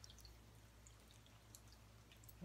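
Near silence: room tone with a low steady hum and a few faint scattered ticks.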